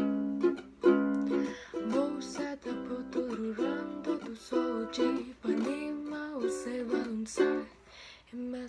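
Ukulele strummed in a bossa nova rhythm, with a woman singing the melody over the chords.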